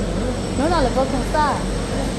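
A few short spoken words over a steady low rumble of background noise.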